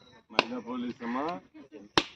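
Two sharp knocks about a second and a half apart, the second louder, as a coconut is struck to crack it open, with men's voices between.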